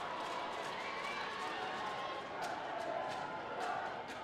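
Football stadium crowd: a steady din of many voices with scattered shouts and calls, at a moderate level.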